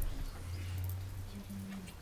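Low, deep hum of monks' voices, held steady for about a second and a half.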